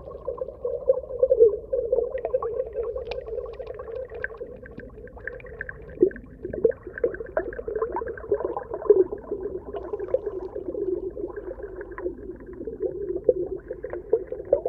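Muffled underwater ambience picked up through a camera's waterproof housing: a steady, dull hum with many scattered small clicks and crackles.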